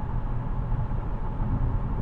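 Steady low rumble of road and engine noise heard inside a car's cabin while it cruises at highway speed.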